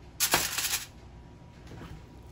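Aluminium foil crinkling in one short burst of about half a second as a beef rib is laid onto the foil lining a roasting pan.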